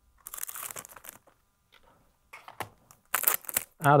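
A packet of electric guitar strings being opened by hand. The packaging rustles for about a second, goes quiet briefly, then crinkles in a run of sharp crackles near the end.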